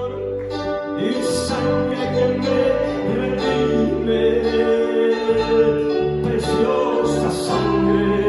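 Live church worship music played through the PA: a man singing into a microphone over electric keyboard and guitar, with a steady bass line under held notes.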